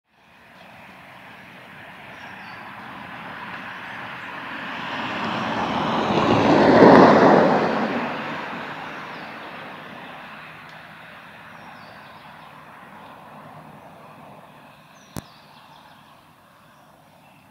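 An aircraft passing over, heard as a broad rumble that swells to its loudest about seven seconds in and then slowly fades. A single sharp click comes near the end.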